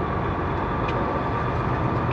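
Semi truck's diesel engine running at low speed as the truck creeps through a turn, heard inside the cab: a steady rumble with a faint steady whine above it.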